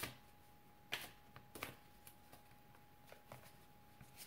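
A deck of oracle cards being shuffled by hand, heard faintly as a few soft, scattered clicks and rustles of card on card. A faint steady high hum runs underneath.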